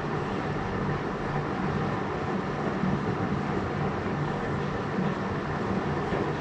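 Steady room noise: a low hum under an even hiss, unchanging throughout, with no distinct knocks or strokes.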